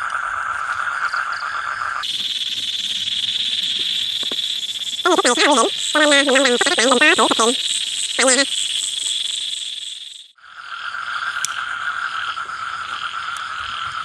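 Night chorus of frogs and insects: a steady, pulsing trill. About two seconds in it switches abruptly to a higher trill, and near ten seconds it cuts out briefly and returns to the lower one.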